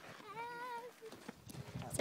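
A brief high-pitched voice call, faint and wavering, about half a second long, followed by a couple of small sharp clicks near the end.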